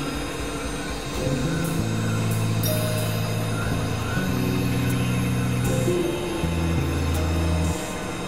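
Layered experimental drone music: held low tones that shift to new pitches every second or two over a steady noisy haze.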